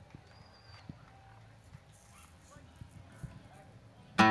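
Faint background noise with a few soft, scattered clicks and knocks: a quiet pause before the music.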